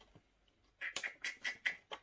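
A quick run of seven or so soft clicks and rustles starting about a second in: handling noise from plastic DVD cases and discs.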